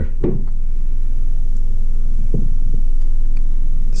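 A steady low rumble with a slight throb, with a few faint soft taps as gummy candies are dropped into a glass jar.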